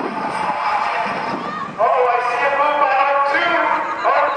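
Spectators' voices shouting during a track race, with a loud drawn-out yell starting just under two seconds in and held for over a second.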